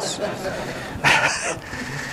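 Audience laughing at a joke, a spread of many voices with a louder swell about a second in.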